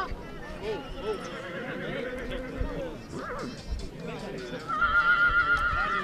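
A horse whinnying near the end, one long quavering call, over the voices of people at the track.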